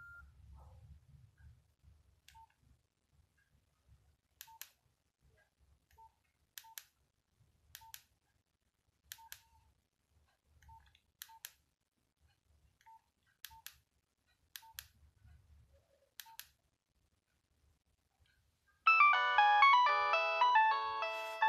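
Nokia 6030 keypad beeps: about a dozen short clicks, each with a brief tone, at irregular intervals as the menu keys are pressed. Near the end a polyphonic ringtone starts playing from the phone's speaker, much louder than the key beeps.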